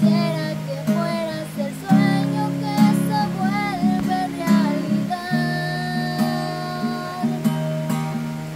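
Acoustic guitar strummed in a steady rhythm, accompanying a young girl's singing voice, which holds one long note in the second half.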